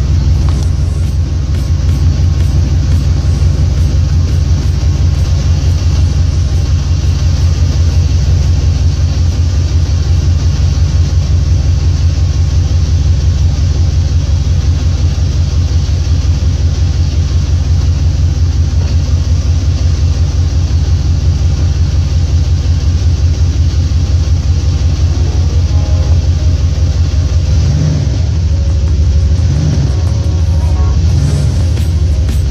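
Dodge pickup engine running steadily with a loud, low, even rumble. The truck is being run to test whether its freshly refilled 46RE automatic transmission will engage and move it.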